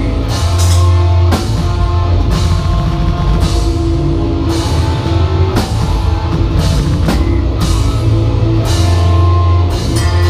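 Heavy metal band playing live: heavily distorted guitars and bass holding low, heavy notes over a full drum kit, with cymbal crashes about once a second.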